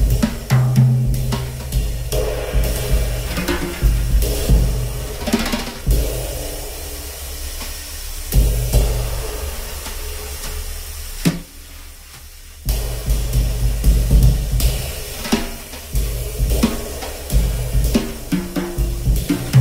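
A 1969 Gretsch Round Badge drum kit played with sticks: snare, toms, bass drum and 1940s K Zildjian cymbals in continuous strokes. About eleven seconds in, the playing drops off after one hit for roughly a second and a half, then picks up again.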